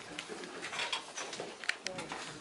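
Low, indistinct voices murmuring in a meeting room, with a couple of light clicks near the end.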